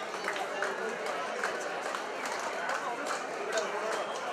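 A crowd of many people talking at once: a steady babble of overlapping voices, with scattered short, sharp sounds throughout.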